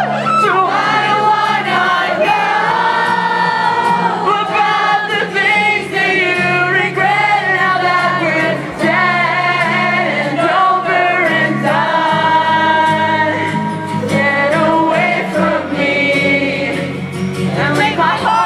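Live acoustic rock performance: strummed acoustic guitar with sustained low notes under singing that moves through a melody without a break, recorded from within the crowd.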